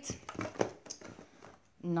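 A few light clicks and knocks of small metal tea tins being handled and set back in their box, most in the first second.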